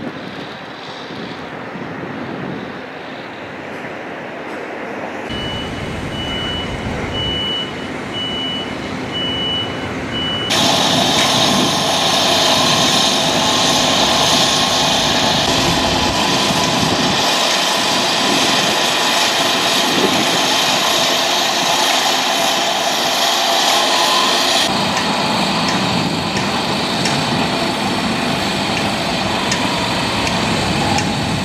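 Construction machinery running at a building site, with a vehicle's reversing alarm beeping about once a second in one high tone for roughly five seconds. From about ten seconds in the engine noise becomes louder and denser and stays steady.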